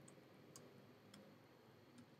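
Near silence with a few faint computer keyboard keystrokes, about one every half second, as a word is typed.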